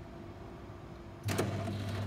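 Coffee machine starting up about a second in: a click, then its motor or pump runs with a steady hum as it begins dispensing milk into the cup.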